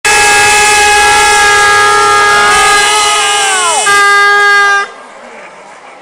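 A loud, sustained horn-like chord that sags down in pitch about three and a half seconds in, then a shorter steady horn tone that cuts off abruptly near five seconds.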